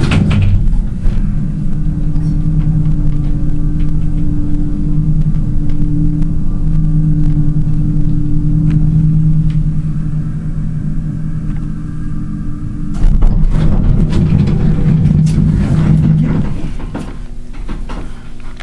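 Elevator car travelling upward: a steady low hum with a constant tone. About thirteen seconds in it gives way to a louder stretch of rumbling noise and clicks.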